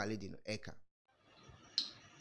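A man's speech trails off into a moment of dead silence. Near the end comes a single sharp click, where the audio is spliced to another recording.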